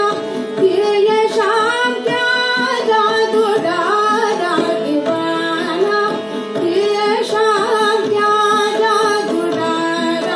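A woman singing a Hindi devotional song in long, ornamented phrases that slide between notes, accompanied by harmonium and tabla.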